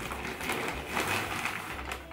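Gift-wrapping paper crinkling and rustling as a present is unwrapped by hand, a steady crackle with small clicks.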